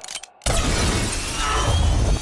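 Film sound effect of a pane of glass shattering as a body crashes through it: a brief hush with a few clicks, then a sudden loud crash of breaking glass about half a second in, over a heavy low rumble.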